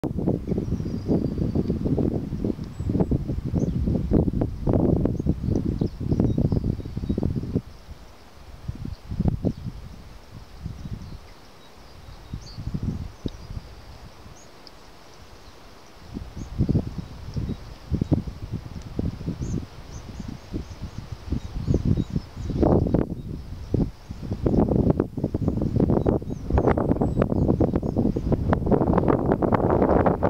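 Wind buffeting the microphone in gusts, heavy for the first several seconds, easing off in the middle and picking up again in the last several seconds. Faint bird chirps sound high above it.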